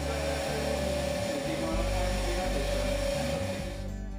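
Hand-held hair dryer running on its hot setting, a steady rushing blow with a motor whine, drying the wet paint on a canvas; it switches off just before the end.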